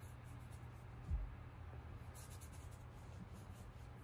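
Faint scratchy strokes of a paintbrush laying acrylic paint onto a board, in two spells, with a low bump about a second in.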